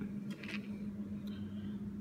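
Quiet room with a steady low hum and a few faint rustles and knocks from handling the phone and camera.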